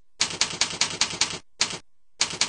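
Computer keyboard keys being typed: a quick run of sharp keystroke clicks, then a single keystroke near the end, as an email address is entered.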